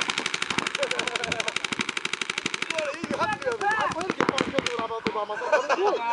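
Paintball markers firing in a rapid, evenly spaced string that stops about three seconds in, followed by scattered single shots and players shouting.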